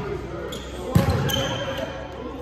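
A volleyball struck with one sharp smack about a second in, with a smaller hit just before, amid players' and spectators' voices in a large gym. A brief high squeak follows the big hit.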